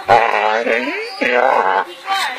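A dog making drawn-out, speech-like whining vocal sounds with bending pitch, in two long runs with a short one between.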